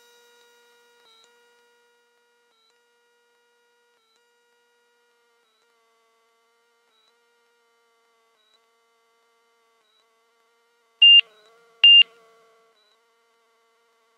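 Two short, high electronic beeps about a second apart, over a faint steady hum.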